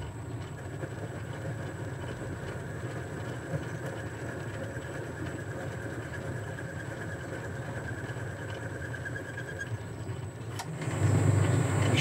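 Boxford lathe running while the parting-off tool takes a light cleanup cut on the end of a threaded steel bar: a steady machine hum with a faint thin whine from the cut. Near the end the sound changes to a louder, lower hum.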